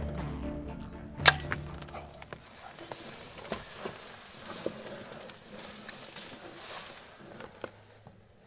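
A bow shot: one sharp, loud crack about a second in as the string is released and the arrow is fired, over a low droning music bed that fades out soon after. Then soft rustling with scattered small clicks.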